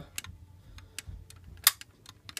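Small clicks of fingertips and nails on a die-cast model car's hood as it is pried open, with one sharper click about three-quarters of the way through.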